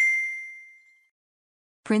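A single bright, bell-like ding sound effect, the chime that goes with an on-screen subscribe-button animation, ringing and fading away over about a second.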